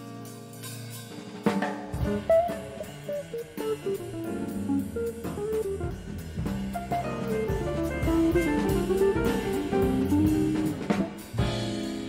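Small jazz band playing live with tenor saxophone, electric guitar, bass and drum kit. A held note gives way to a sharp drum-kit accent about one and a half seconds in, then a busy guitar line runs over bass and drums, with another drum accent near the end.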